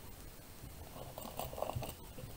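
Soft rustling and handling noises, a few short crinkly scuffs starting about a second in, as knitted wool is moved about in the hands.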